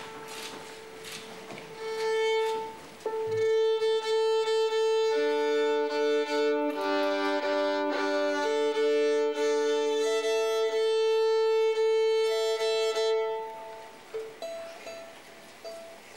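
Violin being tuned: a long bowed A, then open strings bowed two at a time in fifths, D with A and then A with E, each held for a few seconds. Near the end come a few shorter, quieter notes on A and E.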